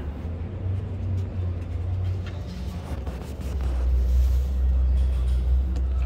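Low steady rumble with a few faint knocks, typical of handling noise as the camera is carried around the CNC machine.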